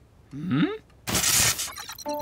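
Cartoon sound effects: a short rising sliding tone, then a half-second burst of crashing, shattering noise.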